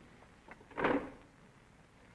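A single short scrape about a second in, in an otherwise quiet pause with faint hiss from the old recording.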